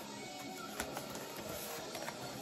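Faint background music, with a few brief clicks as vinyl records are handled.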